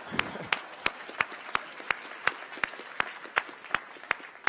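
Audience applauding, with one clapper near the microphone standing out at about three claps a second.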